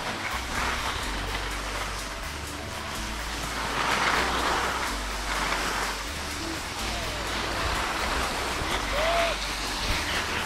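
Skis hissing and scraping over packed snow, louder about four seconds in, under background music with a low stepped bass line.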